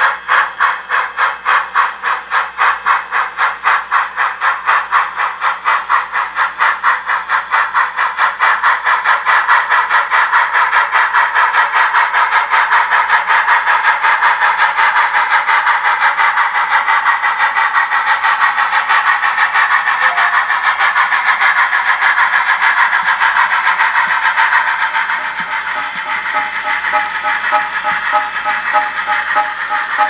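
SoundTraxx Tsunami 750 steam sound decoder in an HO-scale Bachmann Spectrum 2-6-6-2 playing steam exhaust chuffs through small speakers as the model runs. The chuffs quicken with speed until they almost run together, getting louder about eight seconds in and softer near the end. The exhaust is the decoder's Dynamic Digital Exhaust, which varies with motor load.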